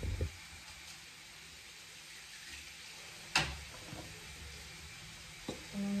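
Quiet handling of a cardboard pastry box as pastries are laid into it, with one sharp knock a little over three seconds in and a faint tap near the end.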